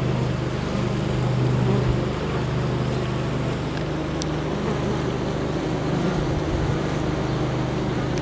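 Honey bees fanning their wings at the hive entrance, a steady low buzzing hum. They are ventilating the hive to cool it in the warm weather.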